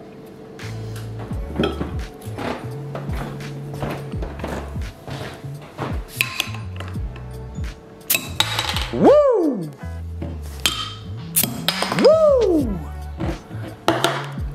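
Background music with a steady bass beat, over which glass beer bottles are prised open with a bottle opener, with clinks and short hisses of escaping gas. Two loud falling swoops in pitch come about three seconds apart, in the second half.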